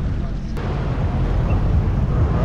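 Jet ski engine running with a low, steady rumble, over water and wind noise, with a brief click about half a second in.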